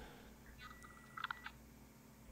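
Faint clicks, a short cluster of a few just past a second in, over low background hum.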